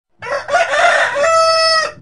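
A rooster crowing once: a short opening note, then one long call that ends on a held steady pitch and cuts off just before the talking starts.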